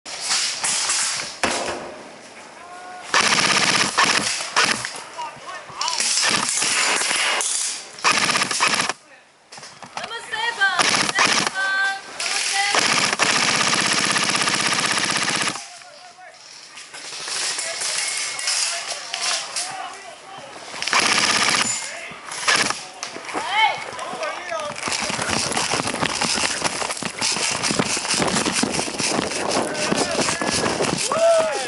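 Airsoft rifle firing repeated full-auto bursts of BBs, some short and some lasting several seconds, the longest near the end. Voices call out between the bursts.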